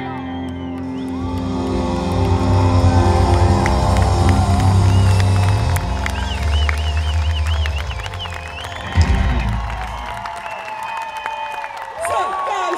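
Live band music with a heavy bass line, ending on a final hit about nine seconds in, followed by a crowd cheering.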